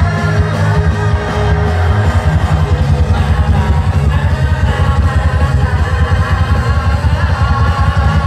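Live band playing pop-rock with a driving drum and bass beat, a male singer singing over it through a microphone.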